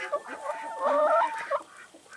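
A chicken hen clucking close up, with a short run of wavering calls in the middle that die away near the end.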